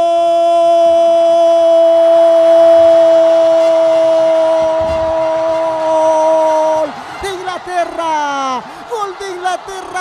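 A sports commentator's drawn-out goal shout, "goool", held loud on one pitch for about seven seconds, then breaking off into quick, falling calls.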